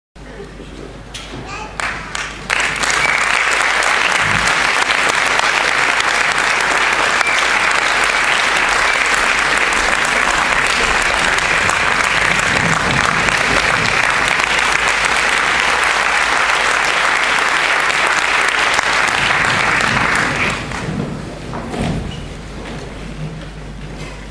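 Audience applause: a few scattered claps, then full applause that holds steady for about eighteen seconds and dies away near the end into quieter murmur.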